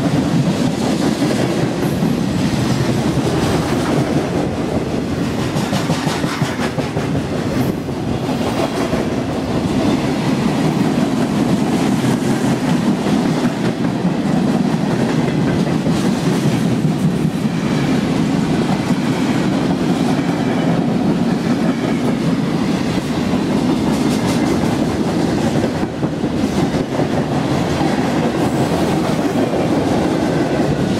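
A long freight train of tank cars, covered hoppers and boxcars rolling past close by, a steady loud rumble of wheels on rails.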